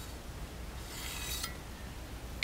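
Height gauge scriber dragged across the layout-dyed aluminium box, a soft scratchy scrape lasting just under a second, as a layout line is scribed.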